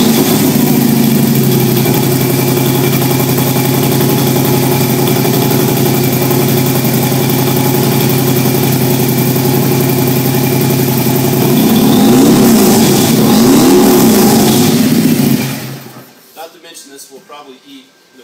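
A 2018 Harley-Davidson Road King Special's V-twin engine running loud through its aftermarket exhaust. It idles steadily for about eleven seconds, then is revved up and down a few times, and is shut off about two and a half seconds before the end.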